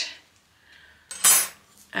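A brief metallic clatter, about half a second long and a second in, as a thin steel craft cutting die is handled and put aside.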